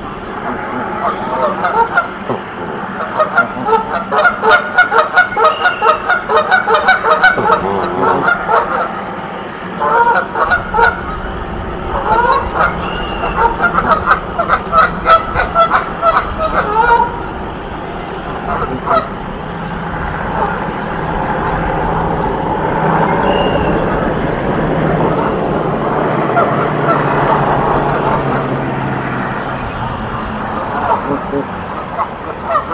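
Canada geese honking in a rapid, loud series of short calls for the first sixteen seconds or so. The calling then gives way to a steadier, softer sound.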